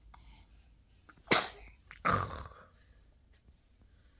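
A person sneezing: a sudden, sharp sneeze about a second and a half in, followed half a second later by a second, longer and softer noisy burst.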